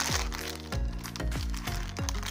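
Background music with a steady beat, over the light crinkle of a plastic bag being handled.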